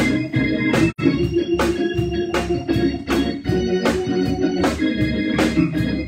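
Organ music with held chords over a steady beat, a sharp stroke about every three-quarters of a second, with a brief dropout about a second in.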